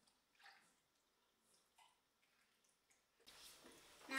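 A few faint drips and splashes of liquid batter ingredient being poured from a small glass bowl into a large glass mixing bowl; very quiet overall.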